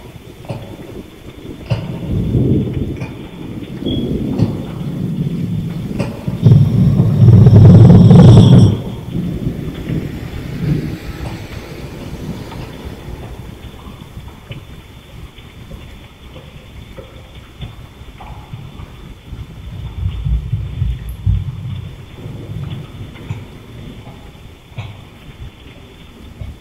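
Thunder rumbling in long rolls over steady rain. The loudest peal comes about seven to eight seconds in and fades out slowly, and a second, lower rumble follows around twenty seconds in.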